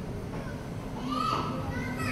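Children's voices chattering together, with one child's voice calling out louder about a second in.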